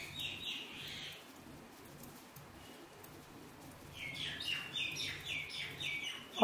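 A small bird chirping in the background: a short run of quick, high chirps in the first second and another from about four seconds in, each chirp dipping slightly in pitch. A faint steady low hum runs underneath.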